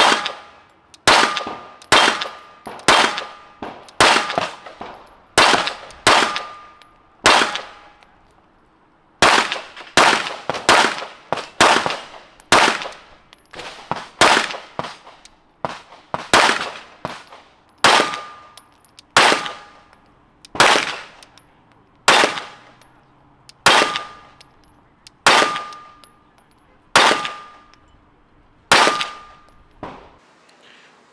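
Steady string of 9mm pistol shots from a Glock 19 Gen 4 fitted with a Radian Ramjet compensator and Afterburner barrel, firing practice ammunition at roughly two shots a second, with one short pause about eight seconds in. The pistol is cycling reliably, with no malfunctions.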